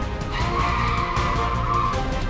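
Car tyres squealing as the car corners hard: one steady screech that starts about a third of a second in and cuts off just before the end.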